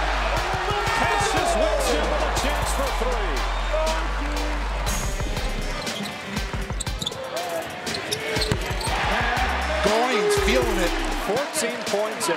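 Basketball game sound from a hardwood court: sneaker squeaks and ball thumps mixed with shouting from players and crowd. Background music with a deep, stepping bass line plays under it.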